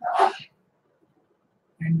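A man's voice: a short breathy vocal burst at the very start, then a pause of over a second, then the start of a spoken word near the end.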